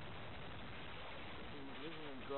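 Steady, even background hiss with no distinct event in it; a man's voice starts up near the end.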